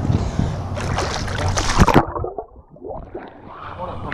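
Pool water splashing and sloshing right at a GoPro's microphone; about two seconds in the camera dips under the surface and the sound suddenly goes dull and muffled, clearing again as it comes back up near the end.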